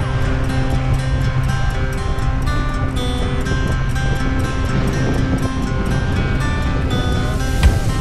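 Background music: held notes over a steady beat, with stronger beat hits coming in near the end.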